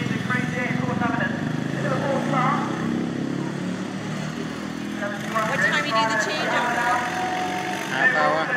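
Ride-on racing lawn mower's engine running hard as the mower passes close by, fading after about four seconds. People talk near the end.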